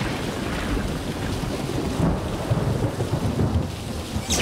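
Storm sound effect: heavy rain pouring steadily, with low rolls of thunder in the second half.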